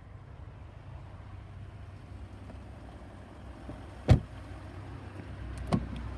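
Range Rover rear passenger door shut with one heavy thud about four seconds in, then two lighter clicks near the end, over a low steady hum.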